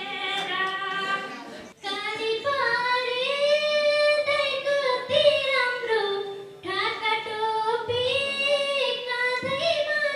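Women singing a Nepali folk song solo into a handheld microphone, with long held, wavering notes. About two seconds in, the singing breaks off sharply and another woman's singing starts.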